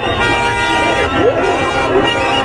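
A large crowd shouting and singing, with several horns held in steady blasts over the voices.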